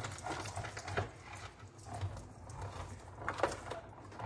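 A hand-cranked cut and emboss machine rolls a sandwich of cutting plates, leaf dies and cardstock through its rollers. It makes a low, uneven rumble with a few clicks.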